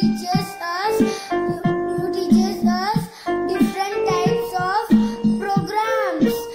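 A young girl singing a song in phrases of held and gliding notes.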